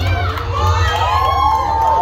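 Children cheering and shouting, several high voices calling out at once, over a low steady hum.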